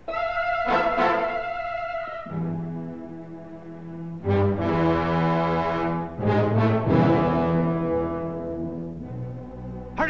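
Orchestral film score led by brass: a sudden loud chord opens it, followed by a series of long held chords that swell and then fade near the end.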